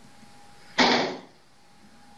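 A door being shut once, about a second in, heard over a video call.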